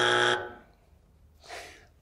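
Game-show wrong-answer buzzer: a flat, steady buzz that cuts off suddenly about a third of a second in, marking a wrong answer.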